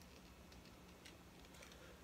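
Near silence: faint room tone with a low hum and a few faint, soft ticks.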